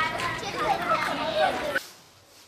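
A group of children talking at once, their voices overlapping, cutting off suddenly near the end.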